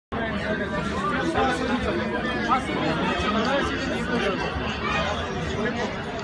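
Indistinct chatter: several voices talking over one another, no single voice clear.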